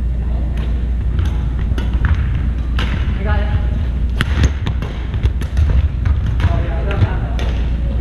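Badminton rally: sharp racket strikes on the shuttlecock come every second or so, mixed with shoe sounds on the wooden court floor. Voices carry in the hall over a steady low hum.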